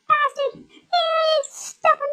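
High-pitched squeaky cartoon voice for a hamster, chattering in short wordless syllables with one drawn-out squeal about a second in.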